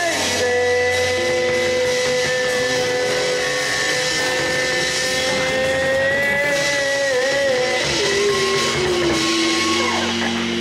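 Live rock band playing with electric guitar and bass, with one long held note that wavers after about six seconds, then falls to lower notes near the end.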